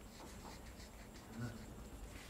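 Faint strokes of a felt-tip marker on the paper of an easel pad as a short line and a small word are written, with a brief low sound about one and a half seconds in.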